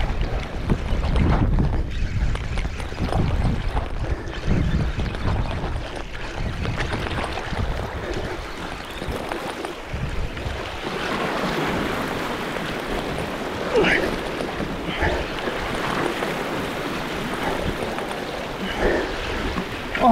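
Wind buffeting the microphone over sea washing against rocks, heaviest in the first half. A few short rising squeaks come a little past the middle.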